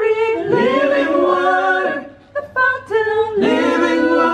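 A small group of voices singing a cappella in harmony: a held phrase that breaks off about two seconds in, then another phrase begins.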